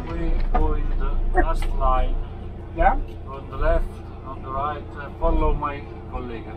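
People talking, words not made out, over the low rumble of an idling vehicle engine that drops off about two seconds in.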